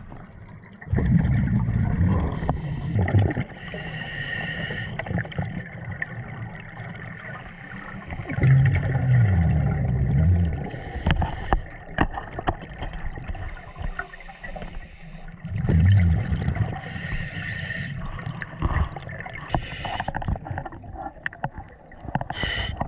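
A diver breathing through a scuba regulator underwater: short hissing inhalations alternating with bubbling exhalations, about three breath cycles.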